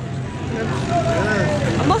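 Motorcycle engine idling with a low, steady hum, with faint voices talking over it.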